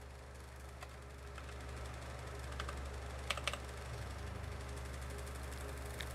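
A few scattered keystrokes on a computer keyboard, as someone logs in at the Windows lock screen, over a steady low hum.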